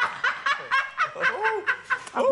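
A woman laughing hard in quick repeated bursts, about four a second.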